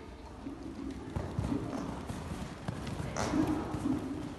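Hoofbeats of a cantering horse on the sand footing of a riding arena, irregular low thuds, with a person laughing near the end.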